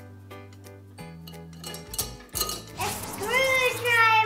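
Small objects clinking against a glass jar as a hand rummages inside it, with a few sharp clinks around the middle, over light background music. A child's voice comes in near the end.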